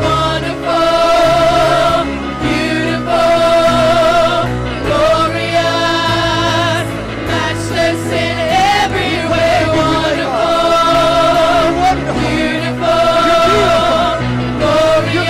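Church praise team singing a gospel worship song with a live band, the voices holding long notes with vibrato over a steady bass line.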